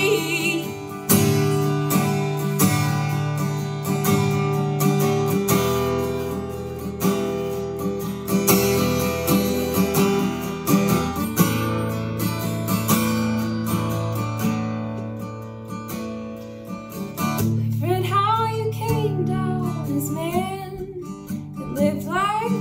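Acoustic guitar strummed steadily in an instrumental passage between sung lines. A woman's singing voice comes back in about three-quarters of the way through.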